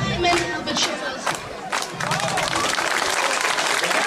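Dance music cuts off just after the start, then an audience claps, a steady patter of applause from about two seconds in, with a few voices among it.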